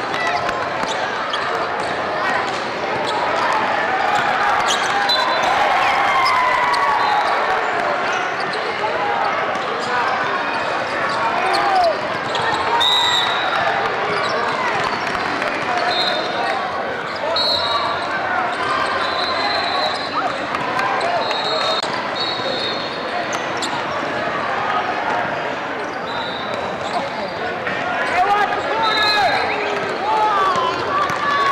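Basketball game ambience in a large hall: a steady babble of many voices from players and spectators, with a basketball dribbling on the court. Short high squeaks come now and then in the middle of the stretch.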